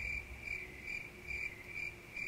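Cricket chirping: a high, even chirp repeating about two and a half times a second.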